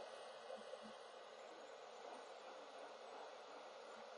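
Faint, steady hiss of a hot air rework gun blowing with its fan on full.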